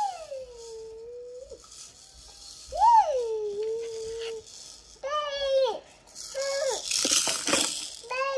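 A dog whining: two drawn-out whines that rise, then hold at a steady pitch, followed by several shorter arched whines and a harsh, noisy burst near the end.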